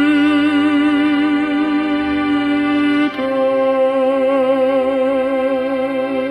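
Tenor voice holding long sung notes with a steady vibrato over sustained pipe organ chords; the held note steps down slightly about halfway through.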